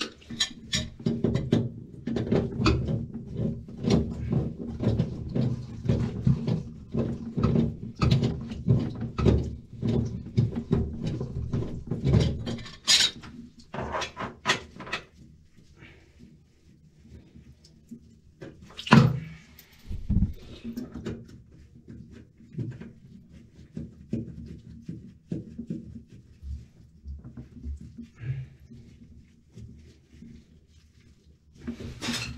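Cloth rustling and rubbing close to the microphone, with clicks and knocks of a hand tool on a toilet's chrome supply shutoff valve that won't shut off. The handling is busy for the first dozen seconds and then thins out, with one loud knock a little past halfway.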